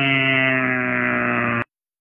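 A loud, steady drone with many even overtones, held at one unchanging pitch, that cuts off abruptly about one and a half seconds in.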